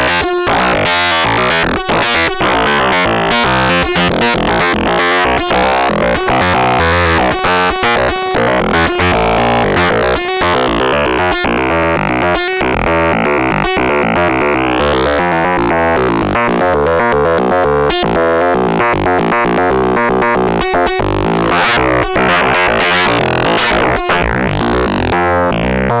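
Serge Paperface modular synthesizer: the NTO oscillator, random-sequenced by the TKB, played dry through the Wave Multipliers. It is a rapid run of stepping notes, with a timbre that sweeps brighter and darker as the wave-multiplier knobs are turned.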